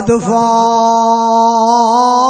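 A man's voice holding one long drawn-out vowel on a steady pitch, with a slight waver and a small rise partway through, intoned like a sung note in the flow of a sermon.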